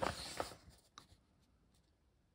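Soft rustle of comic book paper being handled, with a couple of light ticks, then near silence.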